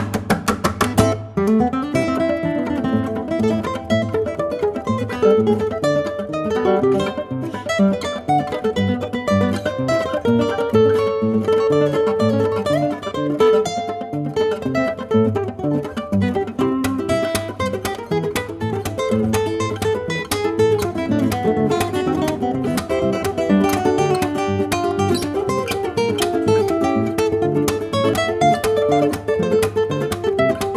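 Two nylon-string classical guitars, a Córdoba Orchestra CE and a Córdoba C12 Cedar, playing a choro duet: a plucked melody over bass notes.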